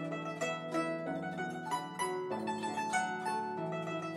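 Guzheng played solo: a quick, steady stream of plucked notes in the middle and upper strings over low notes left ringing underneath.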